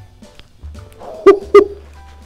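Two short, high-pitched yelps about a third of a second apart, over faint background music.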